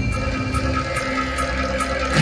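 Recorded music for a stage group dance: a held high note that pulses quickly over a sustained lower note, with a regular percussion beat.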